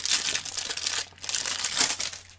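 Packaging of a Funko Mystery Minis blind box crinkling as it is handled and opened, in two spells with a brief lull just past halfway.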